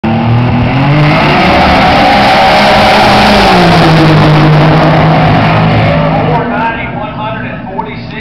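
Turbocharged Buick Grand National V6 at full throttle on a drag-strip pass, very loud as it goes by close, its pitch dropping as it passes. The engine fades away about six and a half seconds in.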